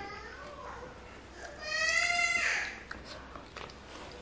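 Two high-pitched, drawn-out vocal calls: a short falling one at the start and a longer, louder one about a second and a half in.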